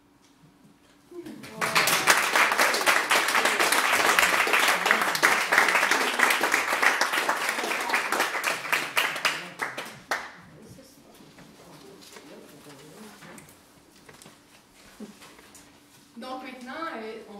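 A small audience clapping in a living room after a string quartet finishes a piece. The applause starts about a second in, stays full until about ten seconds in, then dies away into quiet murmuring.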